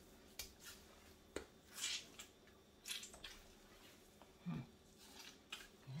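Faint rustling and soft squishing of a cloth bag of labneh being pressed and squeezed by hand, with a few small clicks. The squeezing forces the remaining whey out of the strained yogurt.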